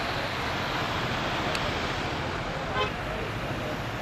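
Steady outdoor street ambience: traffic noise along with faint voices of people gathered in front of a shop.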